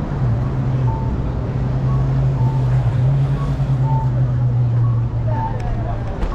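City street traffic at a crossing: a steady low hum of vehicle engines, with short faint tones recurring about once a second.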